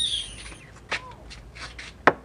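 A bird's short, high chirp falling in pitch, followed by a few faint clicks.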